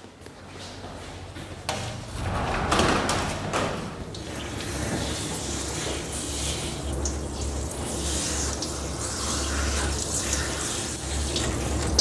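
Handheld shower sprayer running, water spraying onto a small dog's wet coat and splashing in a stainless-steel grooming tub. It starts about two seconds in and stays a steady hiss.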